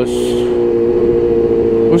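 Kawasaki Ninja H2's supercharged inline-four engine running at a steady, unchanging speed while riding in traffic, with a brief hiss at the start.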